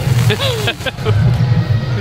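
A person speaking briefly over a loud, continuous low rumble of outdoor background noise.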